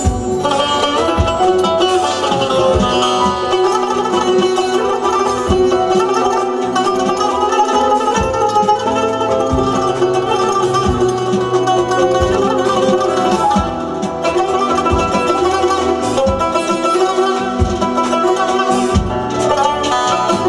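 Azerbaijani tar playing a plucked melody over band accompaniment, with a steady low beat underneath.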